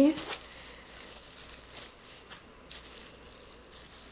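Thin plastic garbage-bag sheeting of a homemade kite crinkling in short spurts as it is handled and turned over.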